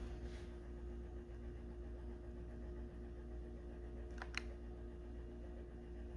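Faint room tone: a steady low hum with one short click a little past four seconds in.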